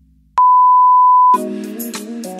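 Workout interval timer's final countdown beep: one long, steady electronic tone lasting about a second that marks the end of the work interval and the start of the rest. Louder upbeat music comes in right after it.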